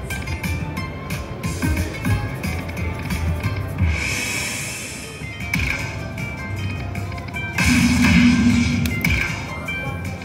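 Dragon Link 'Happy & Prosperous' slot machine playing its bonus music and sound effects, with many small hits as the reels land. Two louder noisy swells come about four seconds in and again near eight seconds in, as the game moves into its fireball-collecting free-spin bonus.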